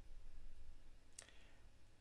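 A computer mouse clicking once, sharply, about a second in, then once more faintly near the end, over a steady low hum.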